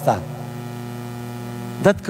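Steady electrical mains hum in the sound system, a low buzz with evenly spaced overtones, heard plainly in a gap between spoken phrases; a man's voice trails off just at the start and comes back near the end.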